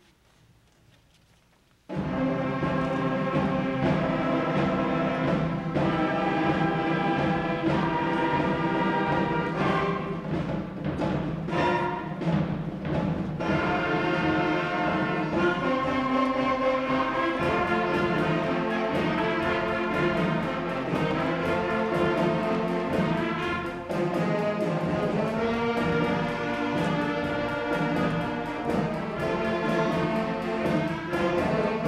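Middle school concert band starting a piece about two seconds in, after near silence: brass and woodwinds playing sustained chords, with a few percussion strokes around the middle.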